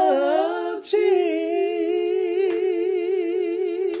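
A woman singing gospel a cappella, solo: a phrase ends just before a second in, she breathes, then holds one long note with vibrato to the end.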